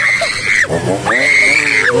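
A person screaming twice in fright: two long, high-pitched screams, the second lasting about a second, with a short shout between them.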